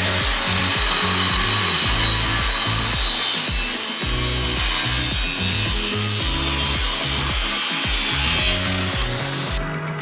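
Angle grinder with a cut-off wheel cutting into steel frame tubing, a steady loud cutting noise that stops shortly before the end. Background music with a beat plays underneath.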